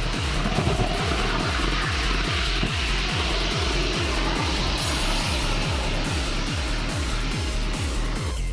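Rocket motor firing on the launch tower, a steady rushing roar that fades near the end, heard under electronic music with a steady thumping beat.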